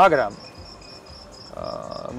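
Crickets chirping: a steady, evenly pulsed high chirp behind a short pause in speech.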